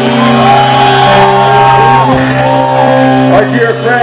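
Live metal band playing loudly through a club PA: long held, slightly bending melodic notes over a steady low drone, with almost no drum hits.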